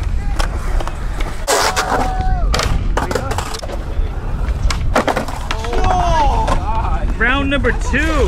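Skateboard wheels rolling on concrete, with several sharp clacks and knocks of boards hitting the ground. Voices shout and call out, most of them in the second half.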